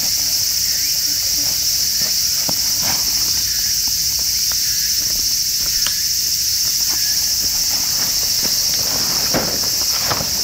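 A loud, steady, high-pitched insect chorus with no letup, over scattered light clicks and rustles of camping gear being handled. The rustling grows near the end as a canvas tarp is pulled out and unfolded.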